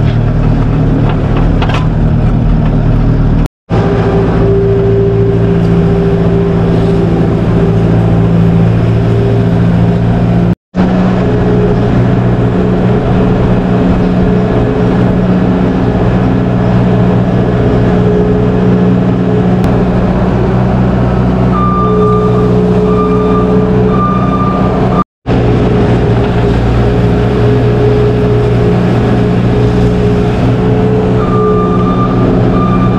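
Skid steer loader's diesel engine running steadily as it drives, heard from the operator's seat. A short beep repeats for a few seconds past the middle.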